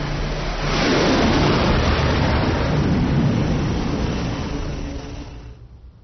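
Carrier-based jet fighter's engines at full thrust as it launches off the flight deck: a loud rushing noise that swells about a second in, holds, then fades away over the last two seconds.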